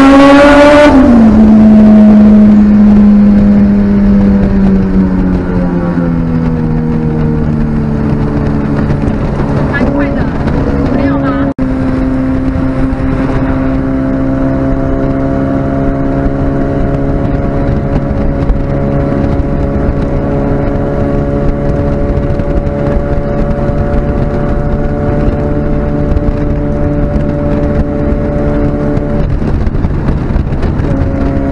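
Turbocharged Honda B16 four-cylinder engine heard from inside the car: the revs climb to a peak about a second in, then fall away steadily over several seconds. After a brief break in the sound, it runs at a steady, constant speed for the rest.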